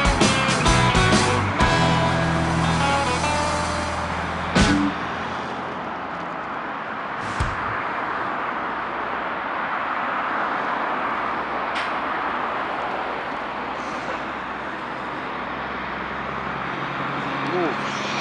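A blues song plays for the first four and a half seconds and cuts off abruptly. After that comes steady highway traffic noise, trucks and cars passing, with a low engine drone for a while near the end.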